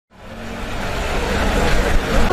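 A car engine running with steady low hum among outdoor street noise, fading in from silence at the start.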